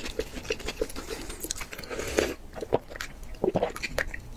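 Close-miked eating sounds: chewing with a steady rhythm of about four soft clicks a second, then a few louder, wetter mouth sounds in the second half.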